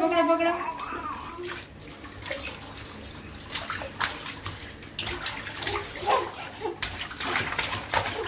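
Water running from a kitchen tap into a stainless steel sink while a baby sitting in it slaps and splashes the water with its hands. The splashes come thick and fast in the second half.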